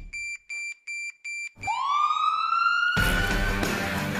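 Trailer music cuts out for four short electronic beeps at one pitch, evenly spaced, followed by a single electronic tone that glides upward for over a second. About three seconds in, music with guitar comes back in loudly.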